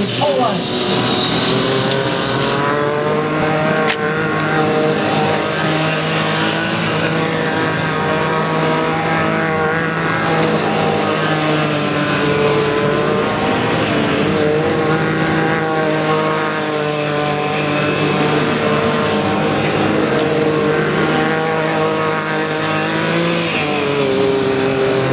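A Formula Student race car's engine driven around a skidpad course. Its pitch climbs at the start, then holds at nearly steady revs with small wavers as the car circles, and shifts again near the end.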